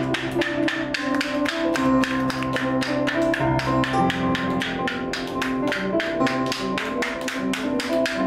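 Live band music: drums keeping a steady beat of about four strikes a second under held keyboard and guitar notes.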